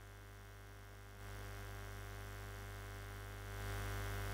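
Steady electrical mains hum in the microphone and sound system during a pause in speech. It grows louder about a second in and again shortly before the end.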